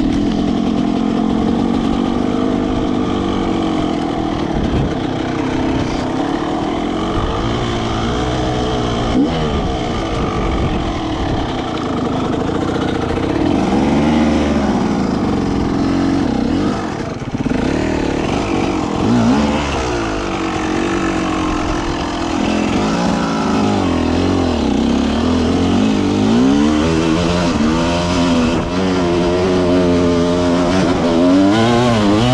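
Enduro dirt bike engine revving up and down continuously, its pitch rising and falling again and again with the throttle, heard close up from on the bike.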